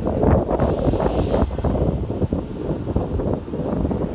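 Wind buffeting the microphone, an uneven, fluttering rumble, with a short hiss lasting under a second a little after the start.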